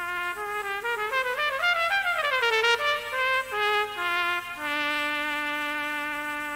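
Solo cornet playing alone: a quick run up and back down, a few separate notes, then a long held note near the end.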